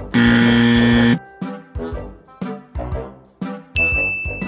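Playful background music with a steady beat. Near the start a loud, harsh wrong-answer buzzer sound effect sounds for about a second, and near the end a high bright ding sound effect rings, as for a right answer.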